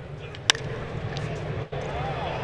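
A single sharp crack of a baseball bat striking a pitched ball, about half a second in, over the steady murmur of a ballpark crowd.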